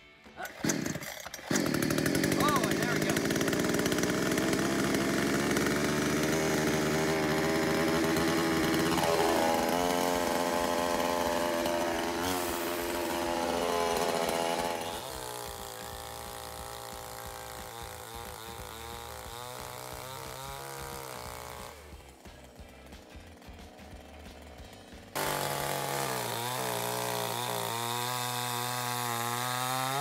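COOCHEER 62cc two-stroke gas chainsaw catching after the starter pull and running at high speed. Its pitch drops a few seconds later and it settles to a lower, steadier running sound. After a brief quieter spell it runs loud again near the end.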